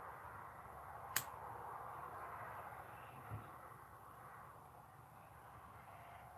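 Quiet outdoor background hiss with one sharp click about a second in and a soft low thump a little after the middle.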